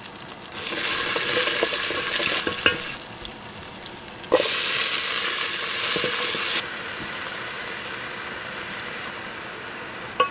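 Food frying and sizzling in a metal pan over a wood fire, with a few light knocks of the spoon as it is stirred. The sizzle is loud for the first couple of seconds, drops, then jumps loud again for about two seconds near the middle before dropping back abruptly to a steady, softer sizzle.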